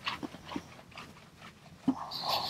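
Eraser wiping across a glass lightboard in a few short strokes, with a sharp knock near the end.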